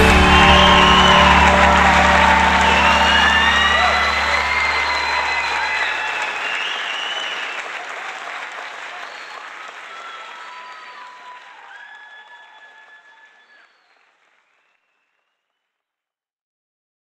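A crowd applauding over the end of a pop-rock song. The song's low notes drop out about six seconds in, and the applause fades away by about thirteen seconds.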